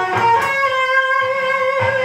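Ibanez electric guitar playing a slow lead phrase high on the neck: a quick change of note with a one-fret slide on the second string, then one note held for over a second.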